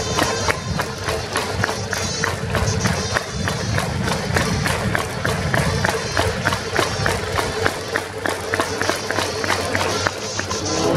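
Stadium crowd cheering in the Japanese pro-baseball style: the fans' cheering band playing the batter's chant music with trumpets, over a steady rapid clapping beat of about three to four claps a second.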